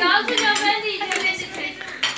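Children's voices talking over a meal, with a few light clinks of forks against plates.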